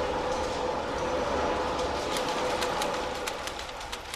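Steam-driven weaving-shed machinery running: a steady droning hum, with a fast, regular clacking that comes in about halfway through.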